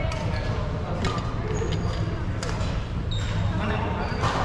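Badminton rackets striking a shuttlecock, about five sharp hits that echo around a large sports hall, with brief shoe squeaks on the wooden court and a steady low hum of the hall.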